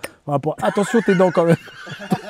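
A man's voice making a rapidly pulsing vocal sound that lasts about a second.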